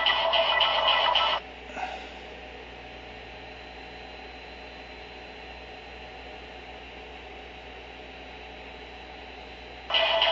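Music playing through a phone's small speaker cuts off suddenly about a second and a half in, leaving a faint steady hiss with a thin high whine; the music comes back right at the end.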